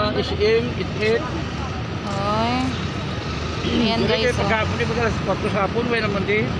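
A man's voice making repeated wordless syllables and long gliding, wavering pitched calls, several separate calls that swoop up and down.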